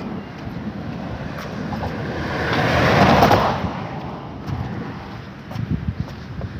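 Road traffic passing on the carriageway beside the walkway: a steady tyre-and-engine noise, with one vehicle swelling past, loudest about three seconds in, then fading.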